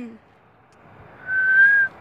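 A person whistling one short, steady note, slightly rising, about a second in.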